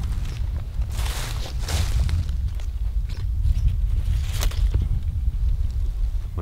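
A steady low rumble of wind on the microphone, with a few brief rustles through low ground plants about a second in, near two seconds and past four seconds.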